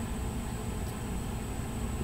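Steady room tone between spoken lines: an even hiss with a low hum and a faint thin high whine.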